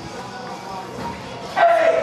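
A child karateka's kiai: one short, loud shout about one and a half seconds in, falling in pitch as it ends.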